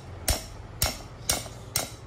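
Four sharp metal-on-metal strikes about half a second apart, each with a brief ring: a steel ring spanner fitted on a bolt of a cast-metal engine housing being struck with a second spanner.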